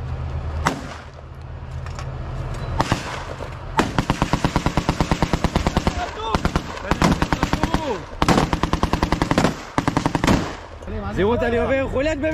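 Gunfire in a firefight: a couple of single shots, then long bursts of rapid automatic fire at about ten rounds a second, broken by short pauses.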